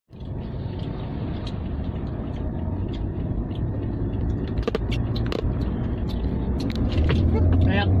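Steady low drone of a car driving on a highway, heard from inside the cabin: engine and tyre noise, with a few scattered light clicks in the middle. A voice starts just before the end.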